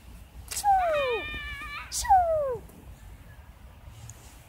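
A young girl's voice calling out "Čū!" twice, each a high playful cry that falls in pitch, with a brief steadier high note between the two calls.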